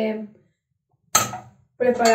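A woman speaking in short broken phrases, with a gap of about half a second in the middle.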